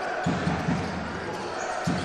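Sound of a live basketball game in a large hall: a basketball bouncing on the hardwood court under a steady murmur from the crowd.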